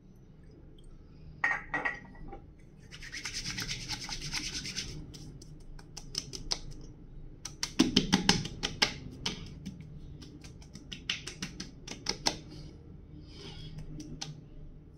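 Palms rubbed briskly together with a steady hiss, then a quick run of sharp pats and slaps on the cheeks and neck about halfway through, and a few more pats later. This is aftershave being rubbed between the hands and patted onto a freshly shaved face.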